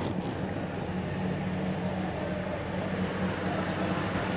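A vehicle engine running steadily with a low, even hum, heard from inside a car.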